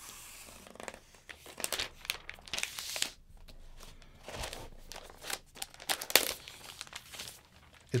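Protective wrapper being peeled off the underside of a new laptop, with quiet irregular crinkling and tearing.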